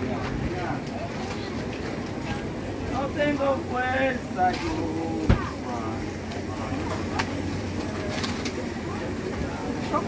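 Chatter of people standing close by, with a steady low hum underneath and one sharp knock about five seconds in.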